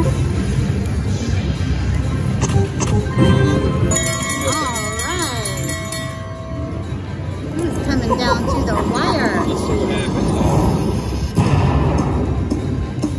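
Eureka Reel Blast video slot machine playing its game music and sound effects as dynamite symbols land and trigger the bonus, over casino chatter. About four seconds in, a warbling tone bends up and down several times.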